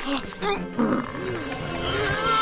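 Cartoon character vocal effects: a reindeer's animal-like vocal noises and a snowman's straining voice as they tug over a carrot, with a music score underneath.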